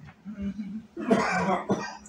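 A man clears his throat, then coughs hard about a second in.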